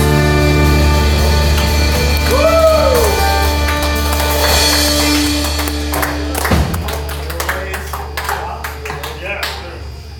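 Live band of fiddle, guitars, bass and drums holding a final chord that rings on and then fades away as the song ends. A short swooping note rises and falls about two and a half seconds in.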